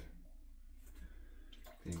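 Faint scraping of a GEM Micromatic single-edge safety razor across lathered stubble.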